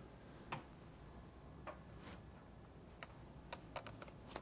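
Sheets of paper being handled in a quiet room: a few faint, sharp clicks and a soft rustle, with three clicks close together near the end.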